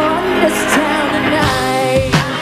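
A woman singing a pop chorus live into a microphone over a band's backing, ending on a held note; the deep bass drops out about a second and a half in.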